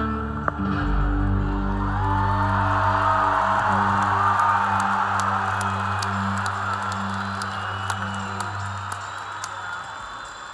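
Live rock band's amplified held chord with a steady bass note ringing on, under an arena crowd cheering and whooping; it all fades over the last few seconds.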